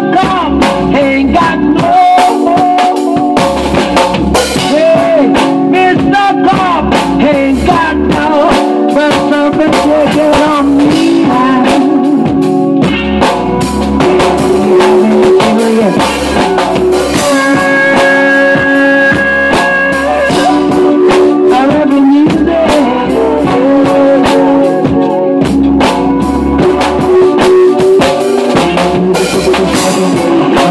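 A drum kit played to a reggae groove inside a full song with a sung vocal, guitar and bass, loud and unbroken throughout.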